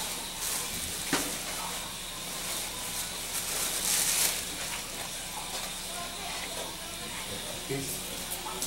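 Blunt knife scraping loose bark off a grapevine: scratchy, hissing strokes in a few uneven surges, the longest about four seconds in.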